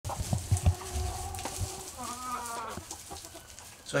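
Chickens clucking and calling: a held call in the first second and a half, with a few low knocks under it, then a wavering call about two seconds in.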